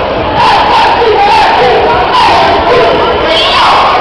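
A large squad of cheerleaders shouting a chant together in short, loud, repeated phrases, over a crowd of spectators.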